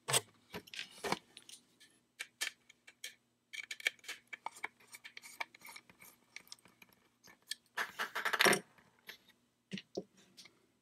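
Small precision screwdriver backing out screws from a carbon-fibre quadcopter frame, with light handling of the frame and its parts: scattered sharp clicks and small scrapes, and a denser burst of clicking and rattling about eight seconds in.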